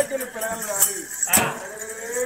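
A folk performer's voice, drawn out and wavering in pitch like a bleat, with two sharp metallic clinks, about a second and a second and a half in.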